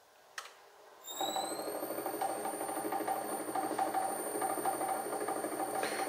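A switch click, then a pillar drill press's motor, run through a frequency inverter, starts about a second in and comes up to speed with a high whine that rises briefly, then runs steadily at a spindle speed of about 400 rpm.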